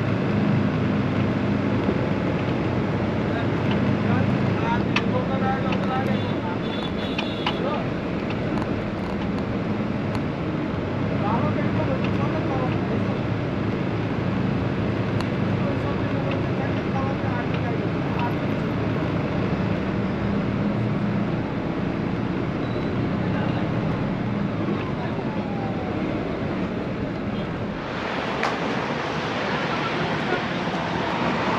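Steady drone of a bus engine and road noise, heard from inside the moving bus, with voices in the background. Near the end the sound changes to a brighter, hissier open-air noise.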